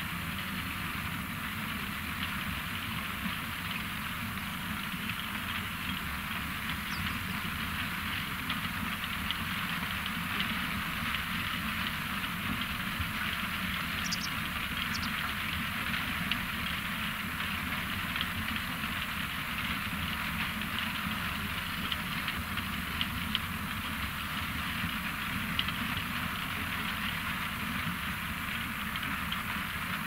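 ROPA Maus 5 sugar beet cleaner-loader working steadily: a low diesel engine drone under a continuous rattle of beets tumbling through the cleaning rollers and up the conveyor into the truck, dotted with many small knocks.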